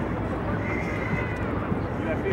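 Busy city plaza ambience: a steady hum of traffic under the mixed noise of a walking crowd, with voices. A high, wavering call or whistle is held for about a second from about half a second in.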